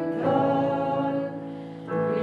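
Choir singing slow sacred music in long, sustained notes, with a short break between phrases near the end.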